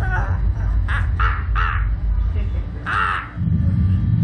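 A man laughing in several short, harsh bursts over a steady low rumble, which drops out briefly near the end.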